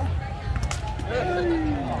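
Voices of players and spectators talking and calling over one another, with a couple of sharp hits about two-thirds of a second in as the woven foot-volleyball ball is struck.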